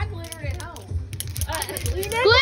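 People's voices at a party over background music with a steady bass beat, with several short sharp clicks.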